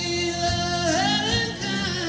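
Live rock band playing with electric guitars, bass and drums, a long held vocal note over the top that bends in pitch about a second in.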